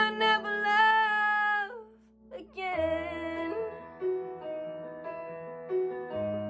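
A young woman's solo voice holds a long, slightly wavering sung note in a slow pop ballad over piano accompaniment, releasing it about two seconds in; after a short pause the piano plays on alone.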